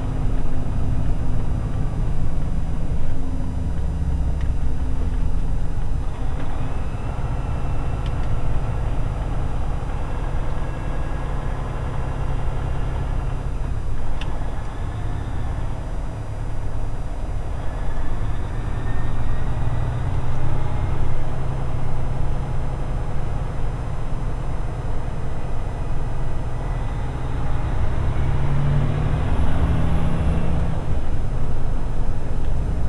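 A road train's diesel engine running under way, heard from inside the cab: a steady low rumble with a faint whine that rises and falls a few times as the truck speeds up and slows.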